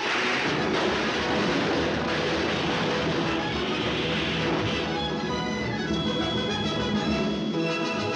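Orchestral cartoon score playing, with a dense noisy sound effect mixed over the music for the first few seconds before clearer held notes take over.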